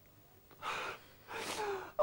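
A man crying, drawing two shaky, gasping sobbing breaths, about half a second and a second and a half in; the second trails into a faint falling whimper.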